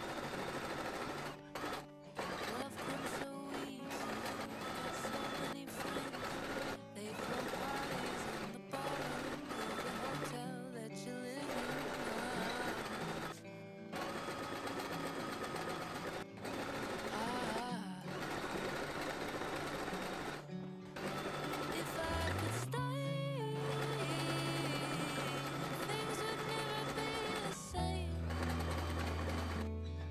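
Domestic b35 sewing machine running, zigzag-stitching coils of string together into a rope bag, under a background song.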